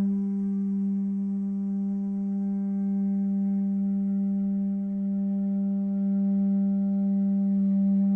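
A conch shell horn blown like a trumpet, holding one long, steady low note rich in overtones.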